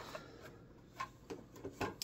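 Faint handling noise from a round plastic stand being picked up and set aside: soft rubbing with a few light clicks, about a second in and again near the end.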